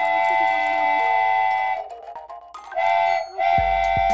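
Cartoon steam-train whistle sound effect blowing three times: one long toot of nearly two seconds, then a short toot and a longer one near the end, over children's background music.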